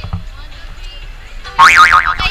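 A cartoon-style 'boing' sound effect, edited into the vlog: one short, loud tone that wobbles rapidly up and down in pitch, about one and a half seconds in.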